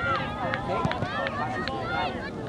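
Several voices shouting and calling at once at a soccer game, overlapping too much to make out words.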